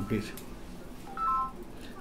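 A phone ringing with an electronic ringtone: a short phrase of three beeps stepping up in pitch about a second in, just before the call is answered.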